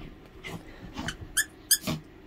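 Plush squeaky toy squeaked twice in quick succession near the end as a small dog bites down on it, the second squeak the loudest, after a few softer sounds of the dog mouthing the toy.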